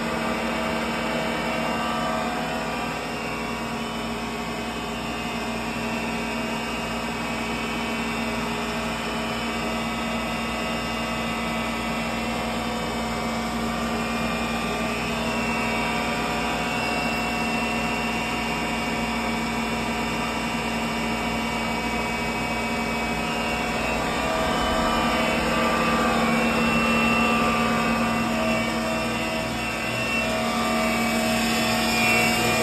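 A 2007 Clausing CV1640CNCF CNC turning center running a sample program, giving a steady mechanical whine made of several fixed pitches. It gets somewhat louder for a few seconds near the end.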